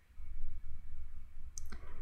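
Low microphone rumble with soft, irregular clicks during a pause between sentences, and a brief hiss near the end.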